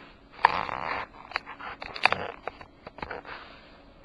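Handling noise from an opened metal power-supply case held in the hand: a few light clicks and knocks. There are two short rushes of noise, one about half a second in and one about two seconds in.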